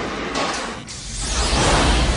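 Space shuttle lifting off: the noisy roar of its rocket engines with a deep rumble, thinning briefly about a second in, then the low rumble swelling again.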